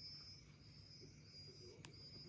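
Near silence: faint room tone with a thin, high, wavering whine throughout, and a single faint click just before the end.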